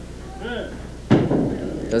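A single sharp knock of a candlepin bowling ball about a second in, with a brief ring after it.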